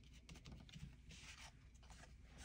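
Near silence with faint rustling and rubbing of paper as a card is pressed down and handled.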